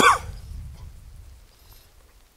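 A man's short cooing "ooh" to a dog, falling in pitch, right at the start, then a faint low rumble.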